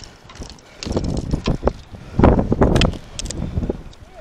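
Wind gusting across the microphone, with surges of buffeting about a second in and again past the middle, and a few light clicks and knocks from handling gear.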